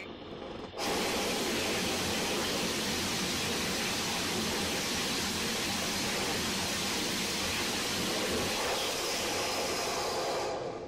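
Hypergolic rocket engine burning white fuming nitric acid, firing on a static test stand: a loud, steady rushing hiss. It starts suddenly about a second in and holds level for about nine seconds.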